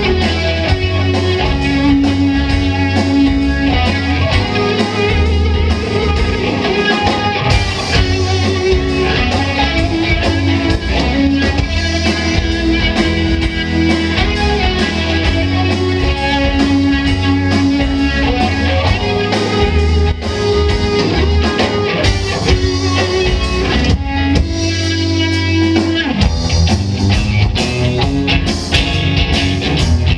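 Live rock band playing an instrumental passage: two electric guitars over electric bass and drum kit, with no singing. The bass and kick drum drop out for about two seconds near the three-quarter mark, then come back in.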